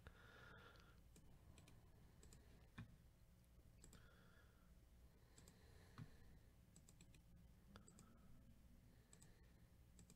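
Near silence with faint, scattered clicks of a computer mouse and keyboard, two of them a little louder about three and six seconds in.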